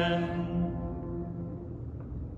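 A man's voice singing the held last note of a two-note 'Amen', breaking off about half a second in, then ringing away in the room's reverberation.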